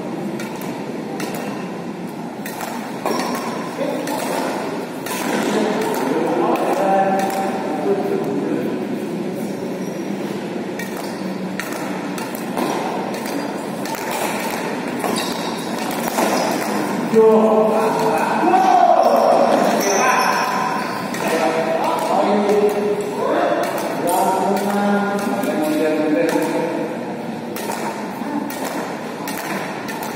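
Badminton rally in an echoing sports hall: repeated sharp racket hits on the shuttlecock, with players' voices calling out over the play, loudest around the middle.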